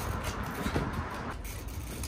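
Steady low rumble of nearby road traffic, with a few faint knocks from a trials bike's tyres on wooden pallets.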